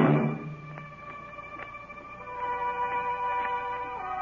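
Orchestral music bridge marking a scene change: a loud chord dies away within the first half-second, then soft sustained notes swell in about halfway through.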